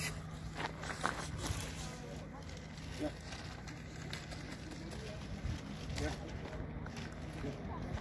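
Faint voices in the background and scattered crunching steps on gravel over a steady low hum.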